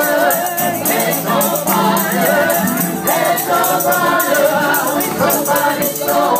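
Live gospel worship singing: voices singing together over band accompaniment, with a steady shaken-percussion beat.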